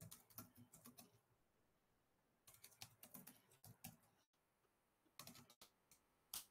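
Faint computer keyboard typing in three short bursts of keystrokes, separated by pauses of about a second.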